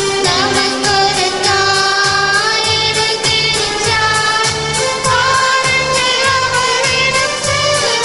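A devotional song: a solo voice singing a melody over an instrumental accompaniment with a steady beat of about two drum strokes a second.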